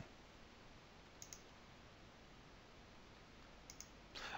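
Near silence, with faint computer mouse clicks about a second in and again near the end.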